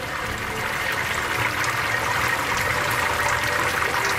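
Honey running from the outlet tap of a stainless-steel water-jacketed honey processor into a mesh sieve: a steady rushing, trickling hiss with no breaks.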